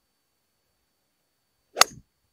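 A Hywood high-lofted fairway wood striking a Nitro Elite Pulsar Tour golf ball: one sharp, short click of impact near the end.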